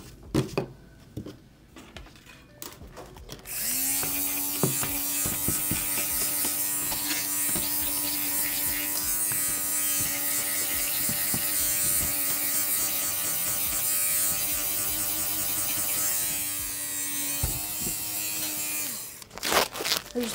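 Electric fabric shaver (sweater shaver) running steadily for about fifteen seconds, starting about three and a half seconds in and switching off shortly before the end, as it shaves lint and pilling off a cotton t-shirt. A few light handling knocks come before it starts.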